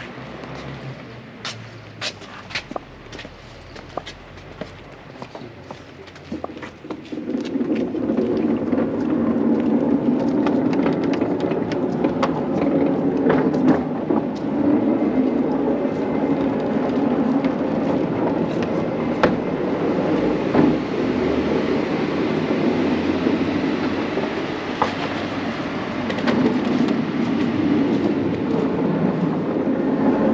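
Hexagonal wooden sutra repository (rokkaku kyōzō) being turned by hand at its push-handle: a steady rumble of the heavy building rotating on its base, starting suddenly about seven seconds in after a few scattered clicks.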